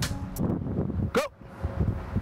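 Outdoor background of wind on the microphone and traffic rumble, with a short rising call a little past a second in.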